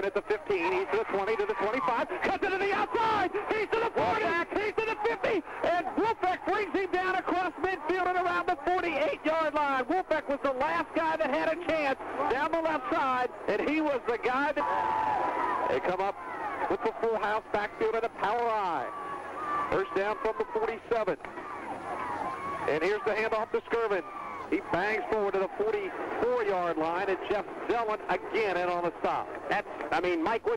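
Voices talking throughout, with no pause.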